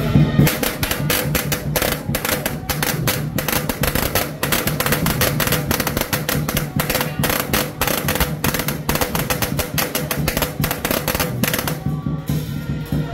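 A string of firecrackers popping in a rapid, ragged stream, starting about half a second in, over steady procession music.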